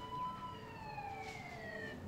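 Faint emergency-vehicle siren from a cartoon soundtrack: one slow wail that rises slightly, then glides down in pitch.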